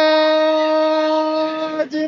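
A man's loud shout held on one high pitch, a commentator's drawn-out goal celebration, breaking off briefly near the end.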